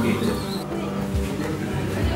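A person speaking in a non-English language over background music.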